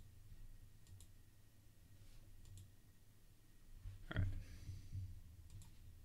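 Faint clicks of a computer mouse and keyboard over a low steady hum, with one brief louder sound about four seconds in.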